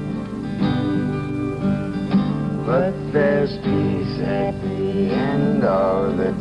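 An acoustic guitar strummed and picked under singing voices: a gentle country-folk song.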